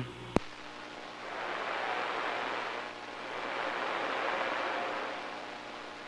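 CB radio receiver hiss on an empty channel after the other station unkeys, with a sharp click about a third of a second in. The static swells and fades twice.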